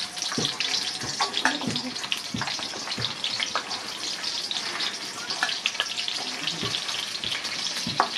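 Sliced onions sizzling in hot oil in a kadai, a steady hiss with many small pops and crackles.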